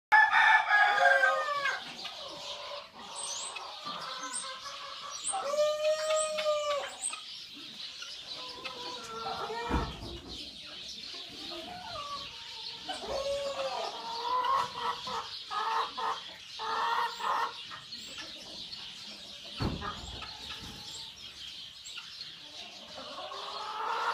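Barnyard chickens clucking on and off, with a rooster crowing once about six seconds in and thin high chirps of small birds during the first seconds. Two dull thumps come near ten and twenty seconds.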